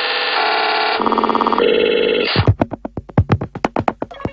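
Electronic music: a held synthesizer chord that shifts in steps, breaking off about two and a half seconds in into rapid short synth stabs, several a second.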